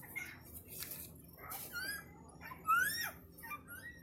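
Small children's high-pitched squeals and giggles: several short squeaky rising cries, the loudest near three seconds in.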